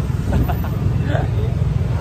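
Steady low rumble of wind buffeting the microphone and motorbike road noise while riding on the back of a moving motorbike, with faint voices over it.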